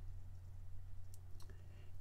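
Quiet pause holding a steady low hum, with two faint, sharp clicks a little past one second in.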